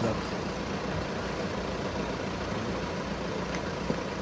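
Steady outdoor background noise with a low engine hum from nearby road vehicles.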